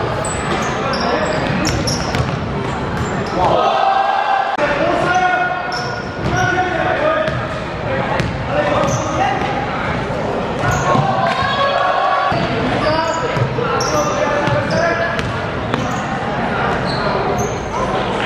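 A basketball game in a large, echoing sports hall: the ball bouncing on the wooden court, many short high sneaker squeaks, and players' and onlookers' voices calling out.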